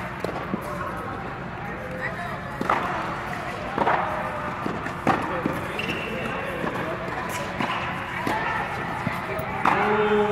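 Tennis balls being struck with rackets and bouncing on an indoor hard court, a string of sharp hits a second or so apart, under the voices of players talking in the background.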